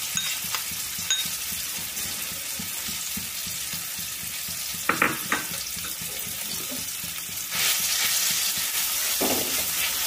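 Ground raw banana peel paste sizzling in hot oil in a wok, a steady frying hiss. There are a couple of short knocks about halfway, and the sizzle grows louder about three quarters of the way in as a spatula starts stirring the paste.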